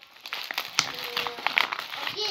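White paper wrapping crinkling and rustling as it is pulled and torn open by hand, layer by layer, in a dense run of small crackles.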